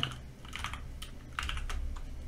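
Typing on a computer keyboard: a few short runs of keystroke clicks.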